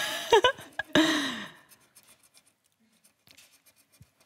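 A coin scratching the coating off a Triss scratch-off lottery ticket: a few short scrapes, then faint scratching ticks in the second half. A voice trails off during the first second and a half.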